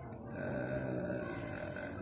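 A man's low, drawn-out hesitation sound, a steady held "ehh" that begins about a third of a second in and lasts through to the end.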